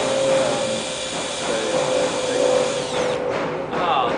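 Cordless drill motor running continuously with a steady whine, twisting strands of twine held in its chuck into rope.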